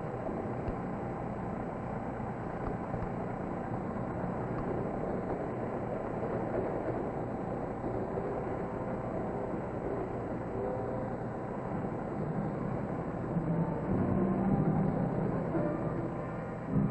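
Steady running rumble of a railway passenger carriage in motion. Low music comes in about two to three seconds before the end.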